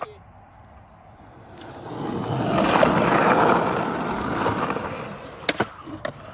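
Skateboard wheels rolling on rough concrete, swelling louder and then fading away. Near the end come two sharp clacks of the board.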